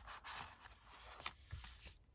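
Faint rustling and a few light ticks of paper pages and a card tag being handled and turned in a handmade journal.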